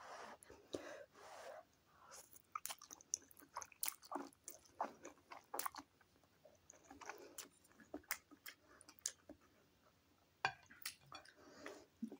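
A person eating instant noodles: quiet slurps as strands are sucked in, near the start and again about seven seconds in, with soft chewing and many small wet mouth clicks in between.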